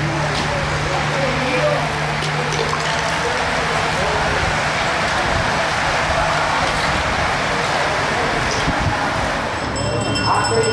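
A large bunch of racing bicycles passing close by: a steady rush of tyres and freewheels on the asphalt, with faint spectators' voices underneath.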